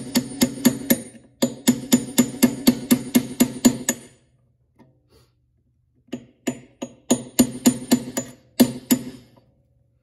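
A hammer tapping rapidly, about five blows a second, on a brass rod set through a C3 Corvette's hood latch striker to turn the striker for adjustment. The taps come in two runs with a pause of about two seconds between them, and each blow rings briefly.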